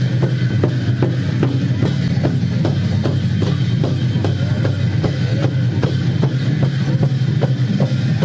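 Large double-headed dhol drums beaten by hand and stick in a steady Sakela dance rhythm, about two to three strokes a second, over a steady low drone.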